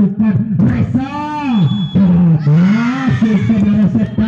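A loud voice talking without a break, with a couple of long drawn-out vowels.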